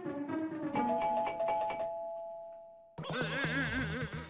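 Electronic doorbell chime: two steady tones ring out about a second in and fade away over a couple of seconds, over light background music. The music comes back louder near the end.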